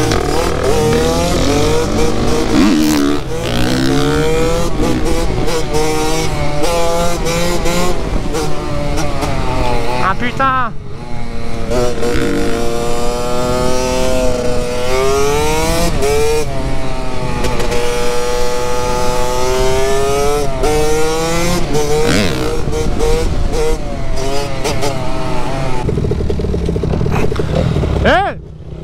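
KTM 65 SX two-stroke dirt bike engine under the rider, revving hard through the gears: its pitch climbs in long pulls and drops back at each shift, with a brief let-off about ten seconds in.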